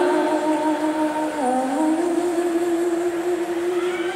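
Live female singing voice holding long sustained notes near the close of a song, the pitch stepping down about a second and a half in and rising back up to hold again.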